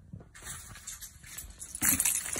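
Soft rustling as items in a tote bag are handled, then near the end a louder clatter as a bunch of keys on a lanyard drops into the bag.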